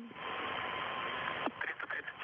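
Hiss of an open radio communications channel between transmissions, with a faint steady tone in it. It cuts off with a click about one and a half seconds in, and faint radio voice fragments follow.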